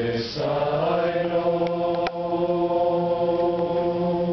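Group of men singing a hymn in harmony, unaccompanied: one line ends, then a new chord comes in about half a second in and is held long and steady.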